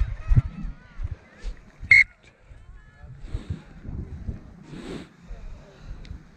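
A referee's whistle gives one short, shrill blast about two seconds in. Low thumps and wind rumble on the body-worn microphone run through the first second or so, with faint distant voices afterwards.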